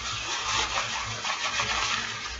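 Nylon pants rustling and swishing as they are handled, an uneven crinkly rustle.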